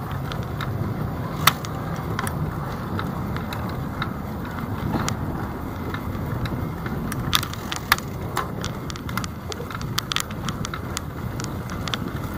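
Steady low rumble of riding along a city street, with irregular sharp rattles and clicks throughout. The loudest clicks come about a second and a half in and twice near eight seconds.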